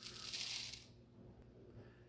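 Uncooked minute rice poured from a plastic measuring cup into a bowl of ground beef, a soft rushing hiss of falling grains that dies away about a second in.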